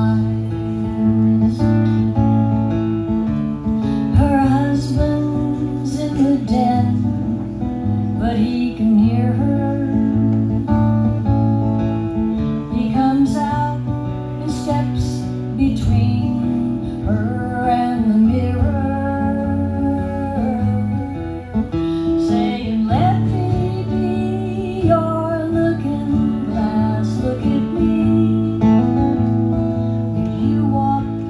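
A folk song performed live on an acoustic guitar, strummed steadily, with a woman singing over it.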